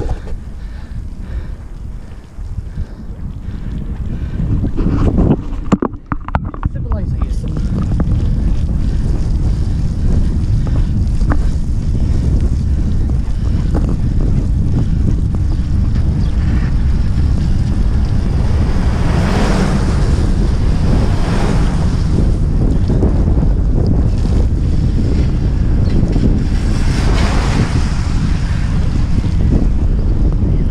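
Wind buffeting the microphone of a bicycle-mounted camera as the bike rides along: a loud, steady low rumble. Two louder swells of hiss rise and fall, one about two-thirds of the way through and one near the end.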